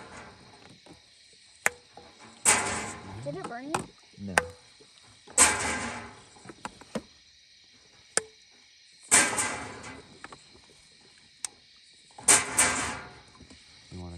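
Glass canning jars of tomatoes being lowered one by one into a stainless-steel water-bath canner of hot water: sharp clinks of glass against the wire grate and the other jars, and a loud slosh of water about every three seconds as a jar goes under. Crickets chirp steadily behind.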